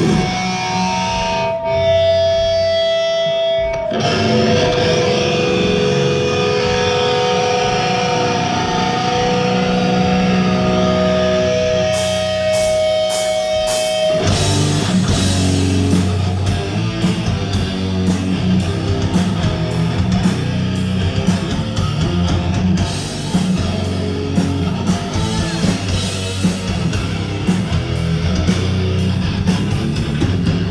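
Live heavy metal band playing with distorted electric guitars. The guitars hold long sustained notes for about the first twelve seconds, cymbal hits come in, and a couple of seconds later the full band breaks into a fast, driving riff with bass and drums.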